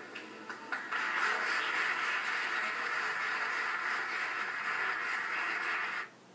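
Spectators applauding in a gym hall, a steady wash of clapping that starts about a second in after a few scattered claps.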